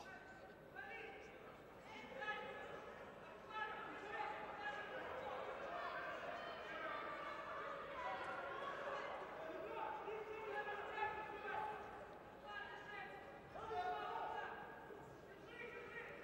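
Indistinct voices calling out in a large sports hall, with a single sharp knock about eleven seconds in.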